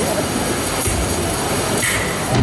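A noise-like sound effect from a stage performance's soundtrack over the hall's speakers, starting abruptly after a song cuts off: a steady hiss with a low rumble that grows about halfway through, resembling a passing train.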